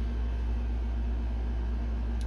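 Steady low background hum with a faint higher steady tone over it, unchanging throughout.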